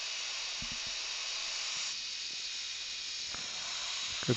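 Steady hiss throughout, with a few faint clicks about half a second in and again near three seconds in.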